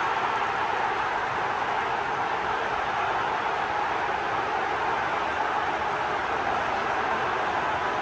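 A large football stadium crowd cheering in a steady, unbroken wall of noise, the home fans celebrating a goal just scored.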